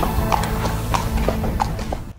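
A horse's hooves clip-clopping at a walk on hard ground, about three steps a second, over background music that fades out near the end.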